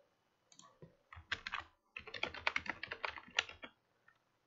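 Typing on a computer keyboard: a few scattered keystrokes about a second in, a short pause, then a fast run of keystrokes that stops just before the end.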